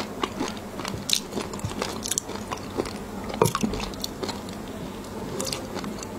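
Close-miked mouth sounds of chewing raw shrimp in a chili and fish-roe sauce: wet, squishy chewing broken by many short crunchy clicks. The sharpest crunch comes about three and a half seconds in.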